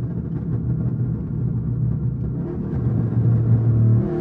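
Dodge Scat Pack's 6.4-litre 392 HEMI V8 heard from inside the cabin, pulling steadily at road speed, its drone growing louder and slightly higher toward the end.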